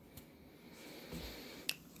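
Quiet room tone with a few small clicks: a faint one just after the start, a soft bump around the middle and a sharper single click shortly before the end.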